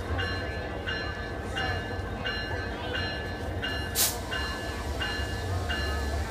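Diesel locomotive's bell ringing steadily at about three strikes every two seconds over the low rumble of the engine. A brief, loud burst of noise comes about four seconds in.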